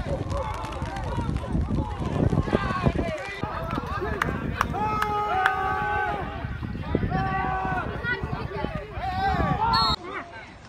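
Several voices on a football sideline shouting and cheering over one another, with two long drawn-out yells partway through. There is heavy low rumbling on the microphone for the first three seconds.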